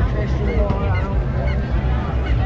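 Crowd babble on a busy outdoor fair street, with short high honk-like calls about twice a second.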